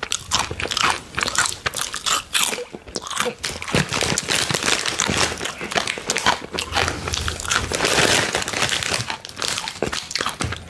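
Close-miked crunching and chewing of crisp Trader Joe's Jerk-style plantain chips: dense, irregular crackly bites throughout. The plastic chip bag crinkles, busiest a little after the middle.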